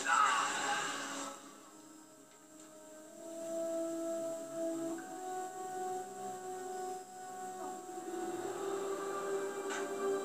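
A TV episode's soundtrack playing from speakers: a sharp hit right at the start and about a second of rushing noise, then slow, long-held music notes.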